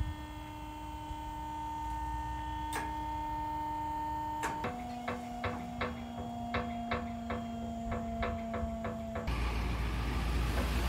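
Dump trailer's electric hydraulic pump running with a steady whine as it raises the loaded bed. About halfway the pitch drops and a regular ticking, roughly two to three a second, joins it. Near the end the whine gives way to a low rushing noise.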